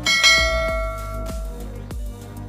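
A bell ding struck once, ringing out and fading over about a second and a half, over background music with a steady beat.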